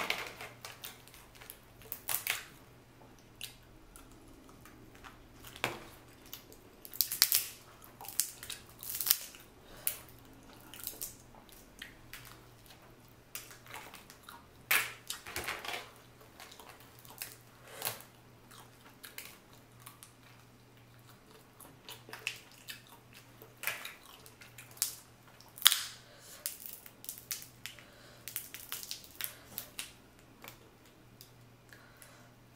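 Boiled crawfish shells cracked and peeled apart by hand, close up: irregular sharp crackles and snaps that come in clusters, with quiet gaps between them.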